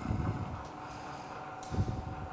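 A pause in a talk: quiet room tone with a faint steady hum, a soft low rumble at the start and a short low thump near the end.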